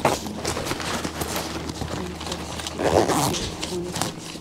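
Rustling and crinkling of paper banknotes being handled and counted, with a run of small crackles and ticks and a louder muffled rustle about three seconds in.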